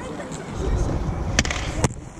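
Inline skate wheels rolling on a concrete skatepark surface, a low rumble that swells about half a second in, with two sharp clacks about half a second apart in the second half.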